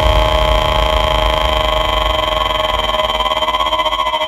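Electronic dance music: a held synthesizer chord over a low rumbling bass, with a fast throbbing pulse that grows stronger in the second half.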